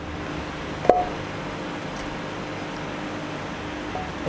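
Steady background hiss with a faint hum, with a single sharp knock about a second in.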